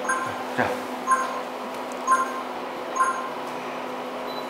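Digital photo booth counting down to the shot: four short electronic beeps about a second apart, over a steady low electrical hum.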